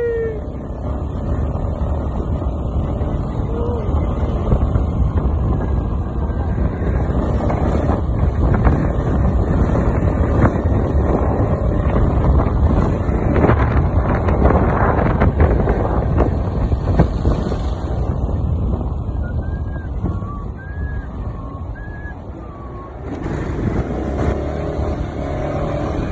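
Motorcycle engine and road noise with wind rushing over the microphone while riding on the bike, steady throughout with a slight dip about three-quarters of the way through.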